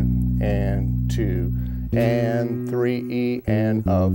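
Electric bass guitar played alone, slowly: low notes held long, changing to new notes about two seconds in and again about three and a half seconds in.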